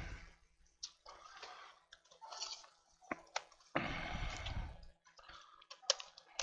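Bench handling noises as a laptop is turned over on a workbench: scattered light clicks and taps, and a scraping rustle about a second long, about four seconds in.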